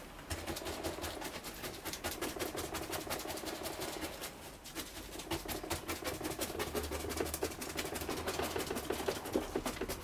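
Resin brush stippling polyester resin into fibreglass mat inside a moulded armour shell: a fast, uneven run of taps.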